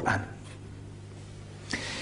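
A man's voice finishes a word just after the start. A steady low electrical hum from the microphone and sound system follows, and a short breathy hiss comes near the end.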